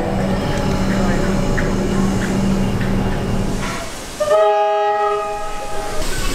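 A train whistle sounds about four seconds in: one long, steady blast of several tones at once, signalling the start of the run. Before it come a steady low hum and people talking on the platform.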